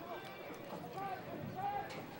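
Shouting from lacrosse players and sideline on an outdoor field, heard at a distance in short calls. A few sharp clicks break through, the loudest near the end.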